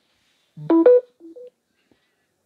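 Samsung Galaxy phone's charging chime: a short run of beeps rising in pitch, the rising pair sounding twice, the second time fainter. It signals that wireless power sharing has made contact and charging is starting.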